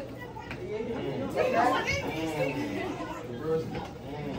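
Several people talking at once, an indistinct chatter of voices in a large hall.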